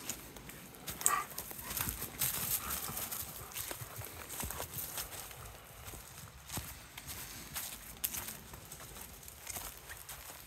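Footsteps walking on moss and dry fallen leaves: irregular soft crunches and rustles.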